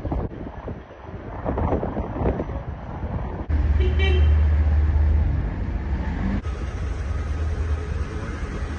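Outdoor street ambience with traffic noise and faint voices. About three and a half seconds in it cuts abruptly to a louder, steady low rumble, then near the end to a lighter steady noise.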